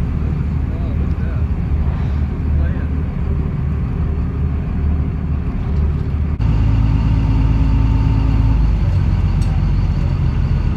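Tour boat's engine running with a steady low hum. About six seconds in it changes abruptly to a louder, deeper drone with a steady tone that fades out near the end.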